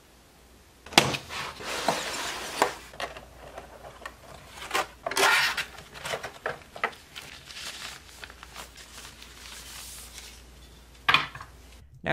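Packaging of an HO scale model railcar being opened and handled: a cardboard box and the clear plastic tray inside it. It crinkles and gives sharp plastic clicks, starting about a second in, with the loudest crackle about five seconds in.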